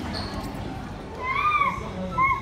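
A young child's high-pitched voice: one rising-and-falling call about one and a half seconds in, over the low steady hum of a large room.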